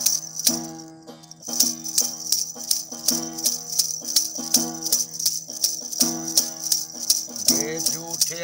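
Instrumental interlude on a gourd-bodied long-necked plucked lute, strummed in a steady repeating pattern of low notes, with a sharp rattling jingle on the strokes about three times a second. There is a brief lull about a second in before the pattern resumes.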